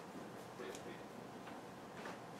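Whiteboard marker writing short ion symbols on a whiteboard: a few faint, irregular taps and brief strokes of the marker tip on the board.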